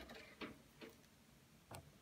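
Near silence: room tone with four faint, short clicks at irregular spacing, the first right at the start.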